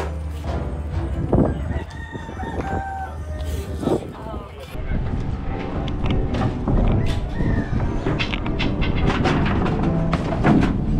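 A rooster crowing once, starting about a second and a half in, over background music. In the second half, knocks and clatter of junk being thrown into a metal dumpster.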